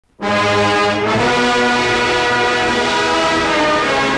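Orchestral music with brass starts abruptly a moment in and plays long held chords that change about a second in.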